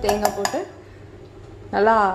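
Steel spoon clinking several times against a stainless-steel mixer-grinder jar as grated coconut is tipped in, the clinks in the first half-second.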